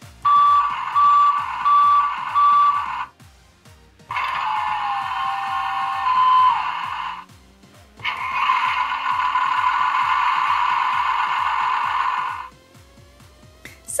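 Electronic sound effects from a Tonka Mighty Fleet toy refuse truck's speaker, set off by its roof buttons: three separate clips in turn. The first has a repeating beep for about three seconds, the second runs from about four to seven seconds, and the third is a longer steady engine-like sound from about eight to twelve seconds. Quiet background music plays underneath.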